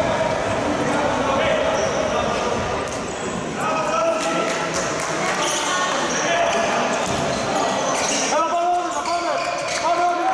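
A handball bouncing on the court floor of a large sports hall as players dribble, the impacts echoing, with players' voices calling out and shouting, loudest near the end.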